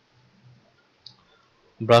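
A single faint computer mouse click about a second in, selecting a tool. A man's voice starts speaking near the end.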